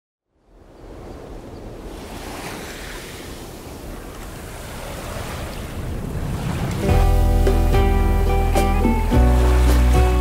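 Small waves washing up on a sandy shore: a soft wash that swells slowly. About seven seconds in, music with sustained chords over a deep bass comes in suddenly and is louder than the surf.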